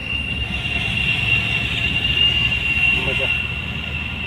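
A car being driven, heard from inside the cabin: a steady low rumble of engine and road. A steady high-pitched whine runs over it.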